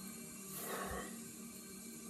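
A man blowing out a faint, breathy exhale through an open mouth about half a second in, reacting to the burn of a very hot chilli.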